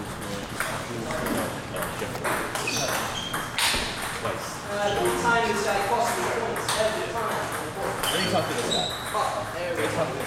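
Table tennis ball clicking sharply off paddles and the table during a rally, the hits coming at an irregular pace.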